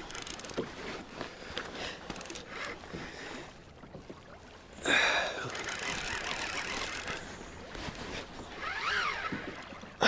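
Fishing reel being wound against a heavy fish from a kayak, with water slapping the hull, scattered clicks early on and a short loud sound about five seconds in. Around nine seconds a rising-and-falling pitched sound comes and goes.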